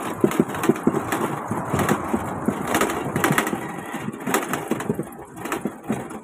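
A pushcart being rolled along a rough concrete street, its wheels and frame rattling and crunching in a steady run of irregular clicks and knocks that eases a little near the end.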